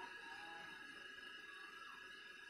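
Near silence: faint room tone with a steady, thin background tone.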